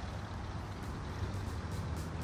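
Steady low rumble of road traffic: cars idling and creeping along in a traffic jam.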